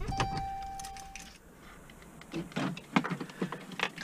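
Dodge minivan's electronic warning chime: one steady beep about a second long at the start, then a few light clicks and rattles of handling inside the cab.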